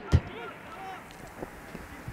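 Faint open-air ambience from a football pitch, with distant voices from the field.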